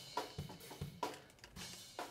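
A programmed Superior Drummer 2 sampled drum kit beat playing back quietly through a single ambient mono room-mic channel. Kick and snare hits fall under a steady wash of cymbals.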